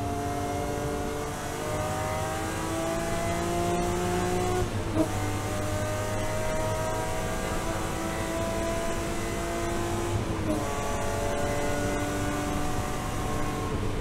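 BMW M3 E36 race car's straight-six engine heard from inside the cockpit, pulling at full throttle down a straight. The engine note climbs steadily and drops back at two upshifts, about five seconds and ten and a half seconds in, with a sharp crack at the first shift.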